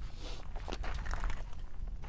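Quiet stretch between shots: faint rustling and a few light clicks over a steady low rumble, with no gunfire.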